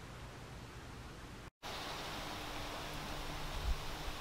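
Faint, steady outdoor background hiss with no distinct source, broken by a moment of dead silence at an edit about one and a half seconds in; after the break the hiss is a little louder.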